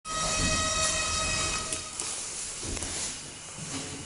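Electric passenger elevator at the landing: a steady, buzzing tone for about the first two seconds over a low hum, then a few clicks.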